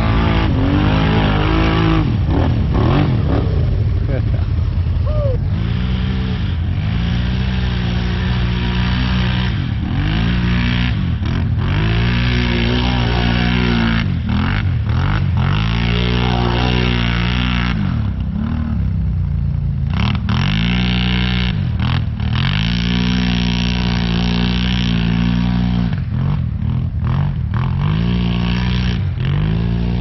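ATV engine revving up and down again and again, each rise and fall lasting a second or two, with a hiss over it.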